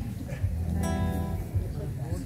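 Acoustic guitar strummed, a chord ringing out about a second in.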